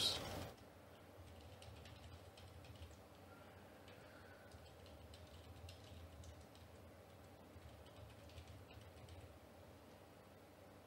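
Faint typing on a computer keyboard, scattered keystrokes as numbers are entered into form fields, over a steady low hum.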